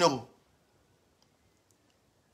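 A man's speaking voice trailing off, then near silence with a few faint clicks.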